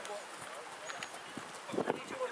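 Faint, scattered voices of players and spectators across a playing field, with one short, louder sound just before the end.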